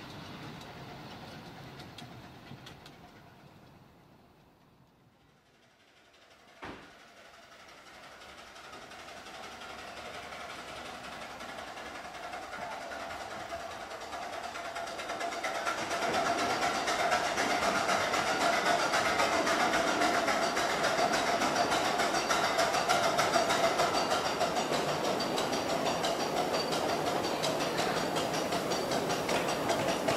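Miniature steam train hauling passenger coaches, a model of a GCR 8K-class 2-8-0. At first its sound fades away down the line, and a single sharp click comes in the lull. Then it returns louder and steady as the train draws in, the wheels rolling and clattering over the rails.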